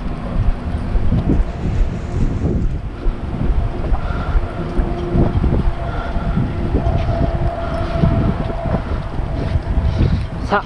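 Wind buffeting the microphone: a loud, uneven low rumble in gusts. A faint steady hum sits underneath it from about three seconds in until near the end.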